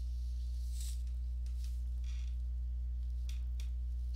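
A steady low hum, with a few faint brief rustles or clicks over it.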